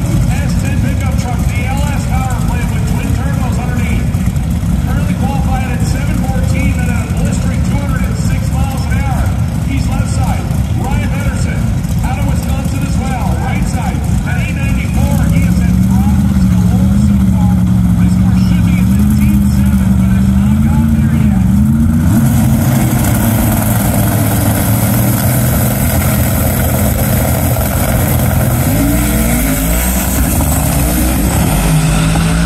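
Stick-shift drag car's engine held at high revs with a wavering pitch for several seconds. About three-quarters of the way in, it gives way to a sudden, much louder full-throttle run down the strip that carries on to the end, with rising revs near the end. Indistinct voices sit over a low engine rumble in the first half.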